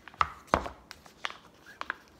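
Paperboard ice-cream pint handled on a countertop: two sharp knocks as it is set down, then a few lighter clicks and taps as the lid is worked.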